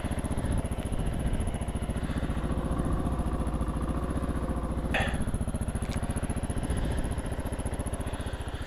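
Kawasaki KLR 650's single-cylinder four-stroke engine idling steadily with an even, rapid thumping pulse. A sharp click about five seconds in and a fainter one a second later.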